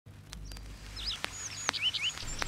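Birds chirping in a series of short, quick calls over a faint low hum, with three sharp clicks, growing a little louder.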